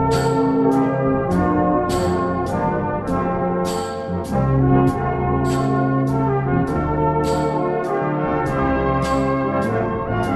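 Brass band music from a euphonium medley: sustained brass chords and melody notes that change every second or so, with a crisp tick keeping time about two to three times a second.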